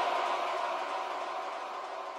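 Outro of a psychedelic trance track: with the beat cut out, a hissing wash of reverb and noise fades away steadily.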